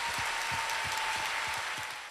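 Theatre audience applauding after a song, fading down near the end.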